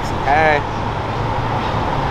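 City street traffic: a steady low rumble of passing cars, with a short spoken exclamation about half a second in.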